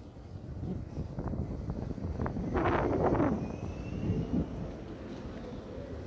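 City street ambience: a steady low traffic rumble with wind on the microphone, and a louder noisy burst about two and a half seconds in that lasts under a second.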